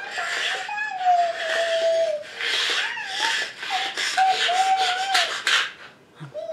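High-pitched whining: several drawn-out calls with sliding pitch over breathy noise, the longest about a second in.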